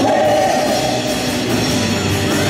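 Live worship band playing a loud rock-style song with electric guitars, keyboard and drums, and voices singing over it.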